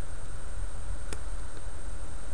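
A steady low hum with a single light click about a second in, as metal tweezers set a small plastic track link into place on the tape.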